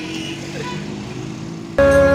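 Motorcycle engine running steadily at idle amid road traffic; near the end, loud music cuts in suddenly.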